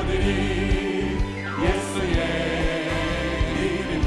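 A congregation singing a hymn together with band accompaniment and a steady beat, hands clapping along about twice a second.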